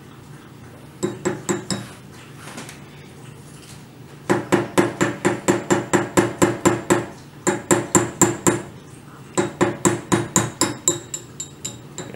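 Small hammer gently tapping a pin punch to drift the front sight pin out of a Trapdoor Springfield rifle's barrel. The sharp metallic taps come in four quick runs of about four or five a second, the last run fading near the end.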